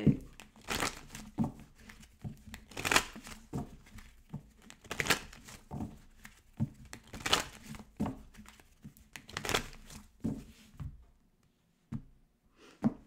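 A deck of Kipper cards being shuffled by hand: a dry papery swish roughly once a second, stopping about a second before the end.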